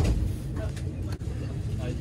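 Low steady rumble inside a train carriage, with a couple of faint clicks and murmuring voices.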